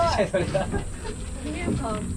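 People's voices talking over a steady background hiss, with a short spoken phrase at the start and another voice about a second and a half in.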